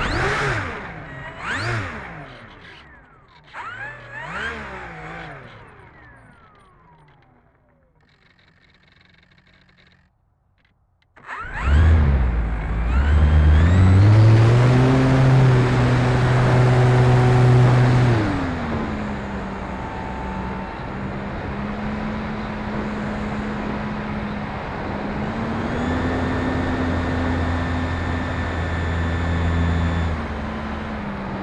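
E-flite Turbo Timber's electric motor and propeller heard from the onboard camera, with air noise. A few short revs fade out in the first seconds. After a brief break the throttle comes up with a rising whine about twelve seconds in and is held steady. It eases back a little past the middle and rises slightly again near the end.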